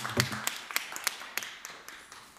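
Scattered applause from a small audience: a handful of people clapping irregularly, the claps thinning and growing quieter towards the end.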